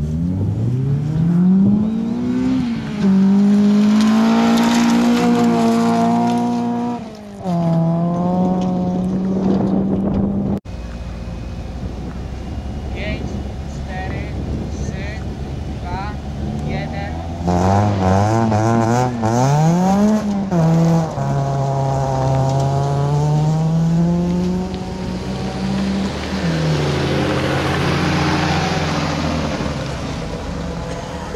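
Rally car engines at a stage start on gravel. Each is revved and held high at the line, then launched hard and run up through the gears in quick rising sweeps. Near the end, gravel and dust spray from the tyres as a car pulls away.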